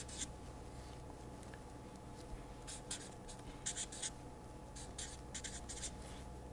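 Felt-tip marker writing on paper: short, faint scratchy strokes in several brief clusters as words are handwritten, over a steady low background hum.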